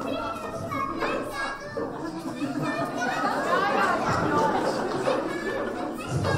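Young children's voices chattering and calling out at once, with adult voices mixed in.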